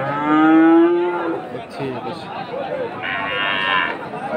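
A young Friesian-cross bull mooing: one long call, rising at the start and then held steady for about a second and a half. A shorter, higher-pitched call follows near the end.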